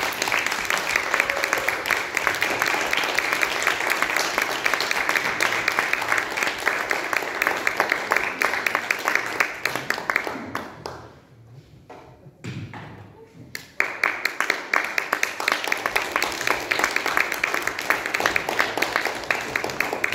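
Audience applauding. The clapping fades out about ten seconds in and starts up again a few seconds later.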